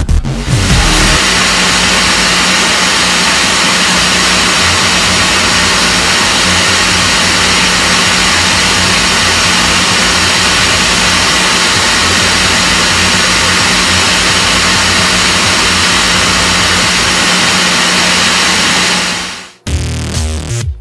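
Hair dryer running steadily, a loud even rush of air over a low motor hum, drying a freshly bathed cat's wet fur. It switches on about a second in and cuts off suddenly near the end.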